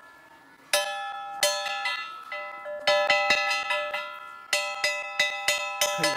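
A hanging metal bell struck again and again with a claw hammer, each blow ringing on in the same cluster of steady tones. The first few blows are slow and spaced apart, then from about halfway they come quickly, several a second, the rings running into one another.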